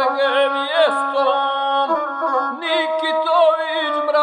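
Gusle, the single-string bowed Balkan folk fiddle, playing a continuous ornamented melody with quick wavering turns over a held low note, which steps up to a higher pitch about halfway through.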